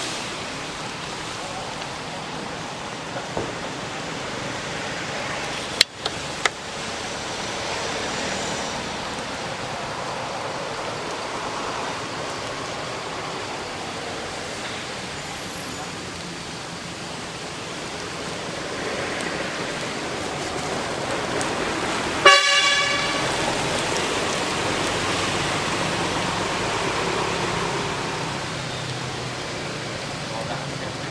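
Steady outdoor background hiss with a few faint clicks, and one short, loud pitched toot about two-thirds of the way through.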